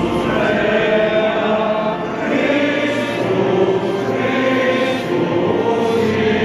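A choir singing a slow chant, in long held notes that change pitch about once a second.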